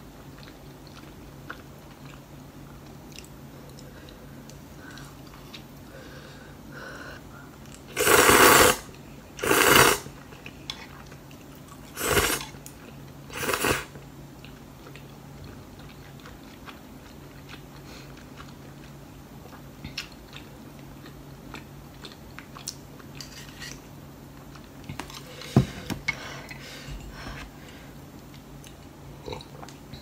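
A person eating noodles from a ceramic bowl with chopsticks, close to the microphone: four loud slurps in quick succession, from about eight to fourteen seconds in, with quiet chewing around them. A few light clicks of chopsticks on the bowl come later.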